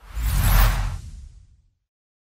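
Logo-reveal sound effect: a whoosh with a deep boom beneath it, swelling to its peak about half a second in and fading away by about a second and a half.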